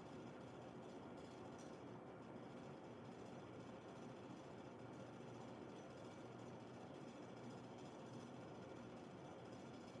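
Near silence: steady room tone.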